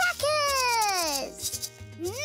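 Gourd maracas shaken in short rattling bursts, near the start and again around a second and a half in, with a cartoon voice sliding down in pitch over the first second, against light music.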